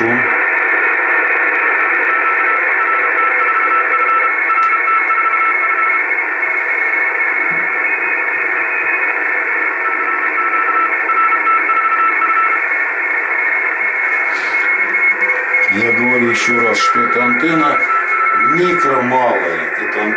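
Receiver audio from a Yaesu FT-450 transceiver on the 160-metre band in lower sideband: steady band hiss with Morse code tones keying on and off in several runs, and a voice near the end. The noise-cancelling antenna system is being switched in to suppress local noise interference.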